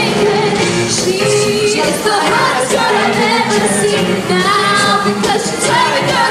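A live pop-rock band playing, with drums, guitar and keyboards, while singers perform into microphones, heard loud and steady from among the audience.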